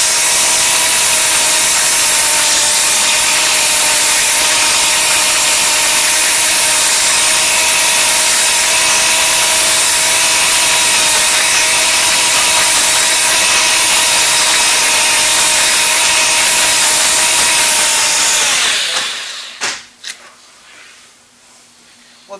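Electric drain-cleaning machine running, its rotating snake cable working through roots and sludge in a drain pipe and binding on the roots: a steady mechanical noise with a faint hum. It winds down and stops about nineteen seconds in, followed by a couple of clicks.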